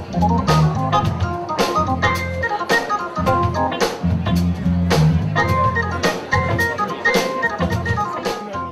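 A live band playing: a drum kit keeping a steady beat, with a sharp hit about twice a second, under held keyboard chords and low notes.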